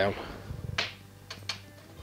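Three short knocks and clicks as the light bar of a photography lightbox is pulled down, the first the loudest, over quiet background music.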